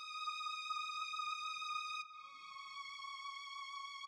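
A software-instrument string patch plays a single high held note with a slight vibrato, then steps down to a slightly lower held note about two seconds in, as patches are auditioned.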